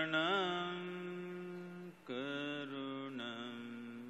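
A man's voice chanting a mantra in long, held notes: one sustained phrase, a short breath about two seconds in, then a second held phrase that steps down in pitch.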